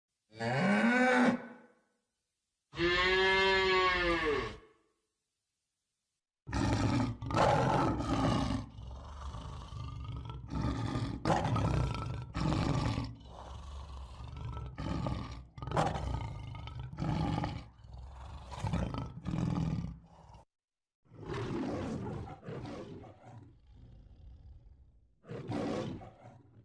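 Cow mooing twice, the second call longer. After a short silence a lion roars in a long series of calls that get shorter and quieter, then a second bout of roaring near the end.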